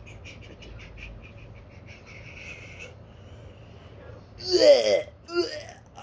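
Faint scattered clicks, then about four and a half seconds in a person's voice gives a loud disgusted groan that falls in pitch, followed by a shorter one. This is the reaction to tasting a bad-flavoured jelly bean.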